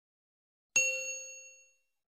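A single bell-like ding sound effect, struck about three quarters of a second in and ringing out over about a second, of the kind laid over a subscribe-and-bell animation.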